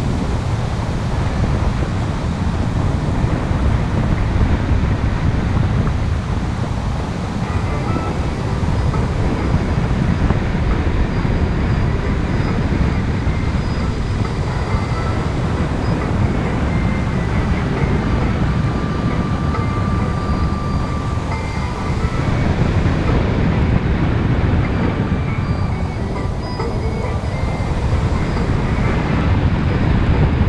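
Wind rushing over the microphone in paraglider flight: a loud, steady low rumble that goes on without a break.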